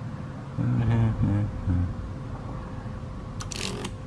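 A brief low murmur of a man's voice, then near the end a quick rattle of clicks as the small magnetic discs of an electromechanical flip-dot display panel flip over when a row and column are energised through probe leads.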